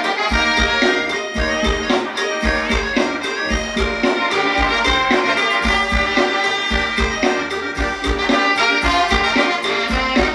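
Live band playing amplified Thai ramwong dance music: a melody line over a steady, even bass-drum beat.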